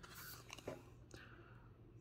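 Faint plastic rustling and a few light ticks of a trading card being slid into a clear plastic sleeve, over near silence.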